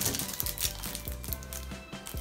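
Soft background music with steady held notes, under faint handling sounds: light knocks and rustles as a cellophane-wrapped makeup palette is handled.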